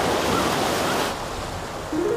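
Sea surf washing in the shallows, a steady rush of noise that eases about a second in.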